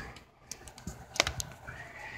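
A few light, sharp clicks and taps from a laptop being handled, the loudest a little past halfway through.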